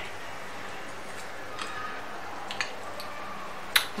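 A person tasting mango jam from a spoon: a few small mouth clicks and smacks, the sharpest and loudest near the end, over a steady low hiss.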